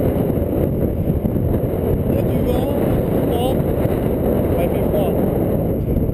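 Wind buffeting an action-camera microphone: a loud, steady, rough rumble with a faint voice showing through it in places.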